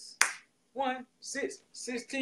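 One sharp finger snap a fraction of a second in, then a man's voice making short rhythmic syllables with hissed 'ts' sounds between them, keeping a beat.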